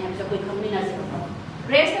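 Speech only: a woman preaching, her voice softer for the first second and a half, then a louder syllable near the end.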